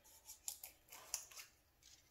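Faint, quick clicks and light rustling of small objects being handled, a handful of short ticks spread across the two seconds.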